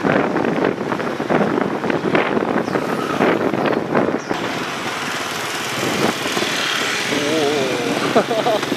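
Ride noise from the back of a moving motorbike taxi in city traffic: steady engine and road noise mixed with wind on the microphone. The sound turns brighter and hissier about four seconds in, and a wavering voice-like tone comes in near the end.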